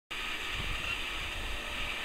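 Outdoor background noise: wind buffeting the microphone in an uneven low rumble under a steady hiss.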